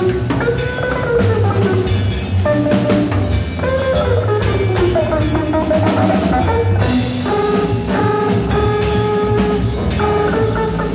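Free-jazz trio of electric guitar, electric contrabass and drum kit improvising live, with busy drums and cymbals throughout. Sliding, wavering pitched lines in the first half give way to steadier held notes from about seven seconds in.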